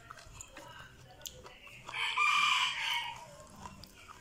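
A rooster crowing once, about two seconds in, lasting a little over a second.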